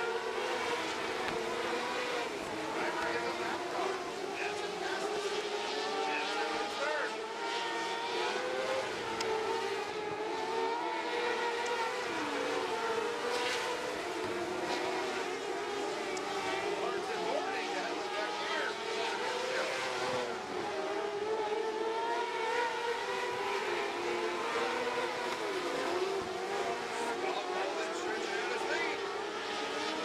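A pack of winged sprint cars racing on a dirt oval. Several V8 engines run hard at once, their pitches overlapping and rising and falling continuously as the cars go around the track.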